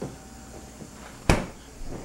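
A kitchen door being shut: one sharp knock just past a second in.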